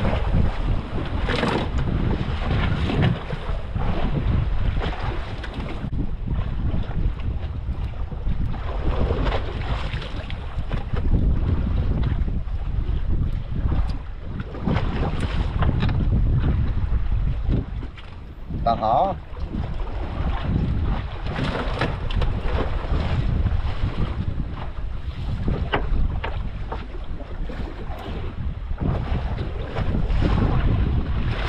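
Wind buffeting the microphone in uneven gusts over open sea, with waves washing against the side of a small fishing boat.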